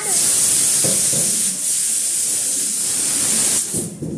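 A loud, steady, high-pitched hiss like escaping steam, which starts abruptly and cuts off just before the end.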